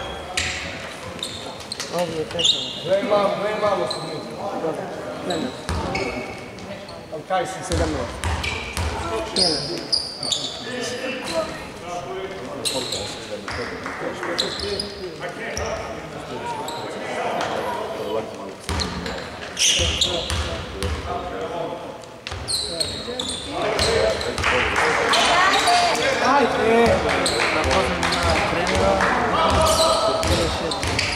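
Basketball game in a large sports hall: voices of players and spectators calling out, with a ball bouncing on the hardwood court and scattered knocks. The crowd noise grows louder and denser in the last several seconds.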